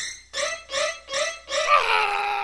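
Eerie horror-style soundtrack: a pitched, guttural pulse repeating about every 0.4 seconds, then a long held tone that starts about three-quarters of the way in.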